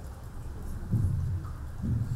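Microphone handling noise: low rumbling thumps, one about a second in and another near the end, as a handheld microphone is passed and held.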